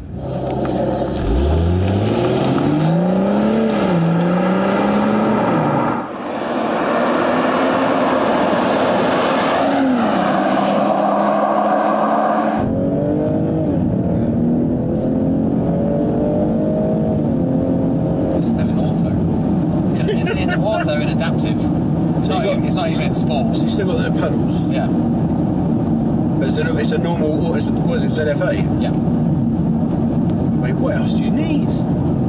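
BMW M240i's turbocharged 3.0-litre straight-six accelerating hard from a standstill, its pitch climbing and dropping back at each upshift. Later the engine settles to a steadier note that rises and falls gently as the car drives on.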